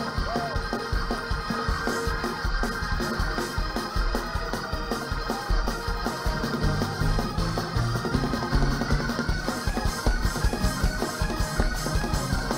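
Live church music led by an organ-sounding keyboard, held chords over a fast, steady beat.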